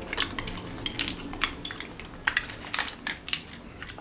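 Irregular sharp crunches of hard, spicy-coated peanuts being bitten and chewed.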